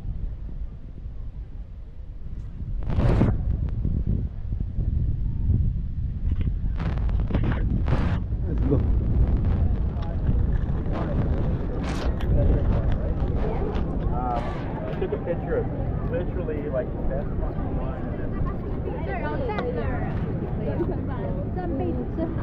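Wind buffeting the microphone as a steady low rumble, with a few sharp knocks in the first half. People's voices chatter in the background from about halfway on.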